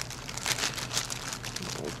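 A thin clear plastic bag crinkling continuously as it is handled and worked off a foam-packed part.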